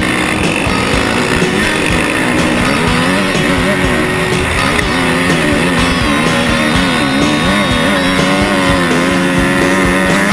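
Rock music with guitar laid over a dirt bike engine revving, its pitch rising and falling with the throttle.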